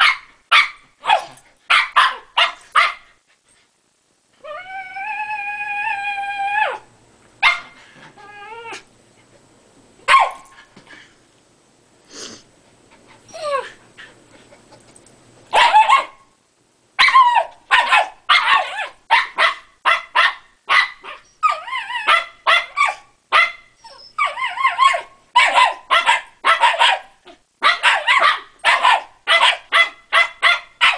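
Shiba Inus play-barking: quick runs of sharp barks, one long, steady, high-pitched whine about four seconds in, then dense, almost unbroken barking and yipping through the second half.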